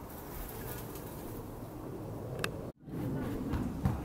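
A flying insect buzzing steadily, with one sharp click midway and the sound cutting out for a split second shortly after.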